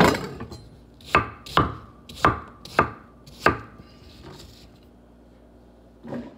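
A kitchen knife chopping apple on a wooden cutting board: about six sharp knocks of the blade striking the board, roughly half a second apart. They stop about three and a half seconds in.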